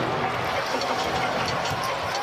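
Arena crowd noise, a steady murmur, with a basketball being dribbled on the hardwood court as the ball is brought up the floor.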